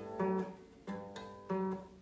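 Guitar in DADF#AD open tuning: three single notes picked one after another, fretted with two fingers at the fifth fret, each ringing out and fading before the next.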